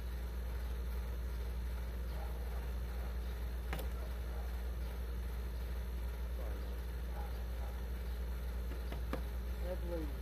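Steady low background hum with faint, indistinct voices and a couple of light clicks.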